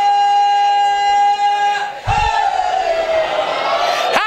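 A man's chanting voice in a majlis recitation holds one long, high note at a steady pitch, breaks off just before two seconds in, then draws out a second long note that slides slowly downward.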